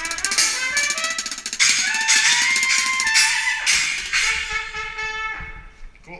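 Live ska-metal band playing: trumpet and trombone play a rising run of notes into long held notes over drums and cymbals, dying away just before the end.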